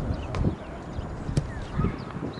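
Two sharp knocks about a second apart, over a low, uneven rumble.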